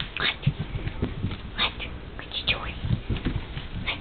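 Two Yorkshire terrier puppies play-fighting, giving a few short, high squeaks and yips, with soft low bumps as they tumble on the bedding.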